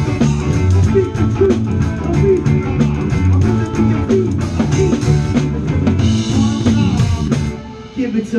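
Live rock band playing an instrumental stretch: electric guitars and a drum kit with cymbals, without vocals. The playing drops away briefly near the end.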